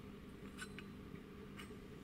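Quiet room tone: a low steady hum with two faint light ticks.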